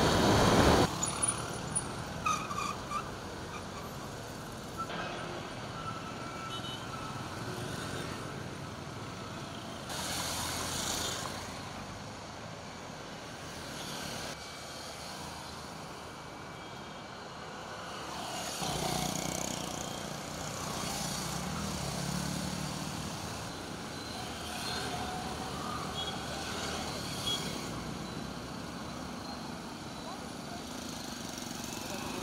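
Light road traffic: now and then a motorcycle or car passes on a quiet street, over a low steady background. The first second holds a loud rush of engine and wind noise from riding along in traffic.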